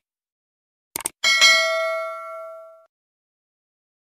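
Subscribe-button animation sound effect: a quick double mouse click about a second in, then a bright bell ding that rings out for about a second and a half.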